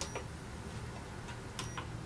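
Induction cooktop's control panel giving a short high beep at the start as the heat is turned down. This is followed by a few soft clicks and taps of a silicone spatula stirring thick starch paste in a small steel pot, clustered near the end.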